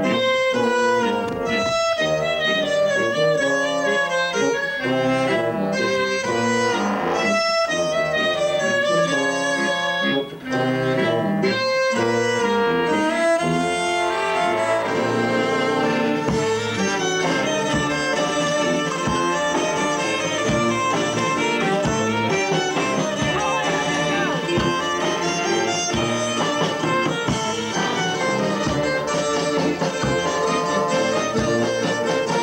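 A live avant-garde folk band plays: accordion, electric violin, hurdy-gurdy, trombone, sousaphone and drums. The first half moves in short stop-start phrases with brief breaks, and from about halfway through it becomes a denser, unbroken passage.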